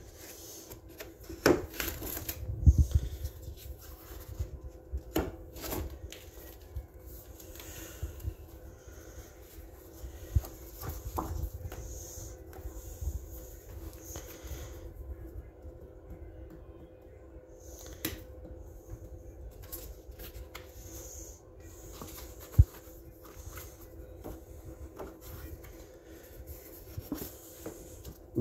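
Pages of a spiral-bound colouring book being turned and handled: scattered paper rustles and light knocks against a wooden table, over a faint steady hum.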